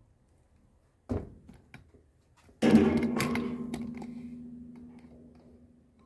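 A knock about a second in, then a louder strike that leaves a metallic ring fading away over about three seconds, most likely from the galvanized metal drum lid that the wooden hive box rests on being struck or bumped as things are handled or set down.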